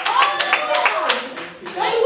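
Congregation clapping hands in quick succession, about four to five claps a second, with voices calling out over the claps.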